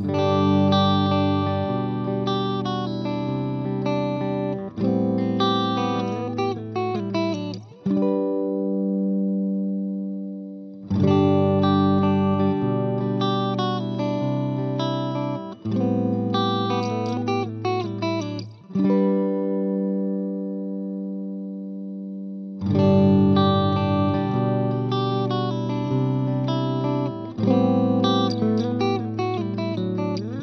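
Clean electric guitar playing the same short fingerpicked chord phrase three times. Each take ends on a ringing chord that fades. The three takes are the same passage played through three different instrument cables, for comparison.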